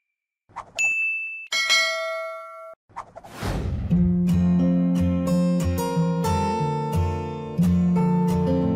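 Subscribe-button animation sound effects: a click, a ding and a ringing bell chime, then a whoosh. Strummed acoustic guitar music starts about four seconds in.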